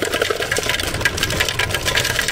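Ice cubes clattering into a plastic cup from a self-serve soda fountain's ice dispenser, a dense, rapid rattle.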